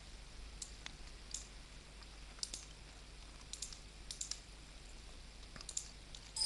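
Faint computer mouse clicks: a few short clicks scattered across the seconds, some in quick pairs, over a low hum.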